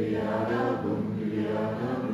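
A group of people singing a song together in unison, holding long notes, with an acoustic guitar accompanying them.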